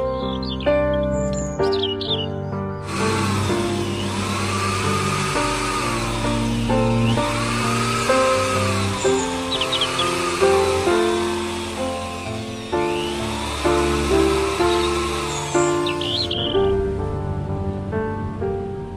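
Background music with steady notes, over which an electric drill runs from about three seconds in until near the end, its whine rising and falling in pitch several times as it bores into the bamboo piece.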